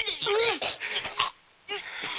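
A girl's wordless whimpering cries and grunts in quick, rising and falling bursts as she struggles, with a short sharp hit at the very start and a brief pause just past the middle.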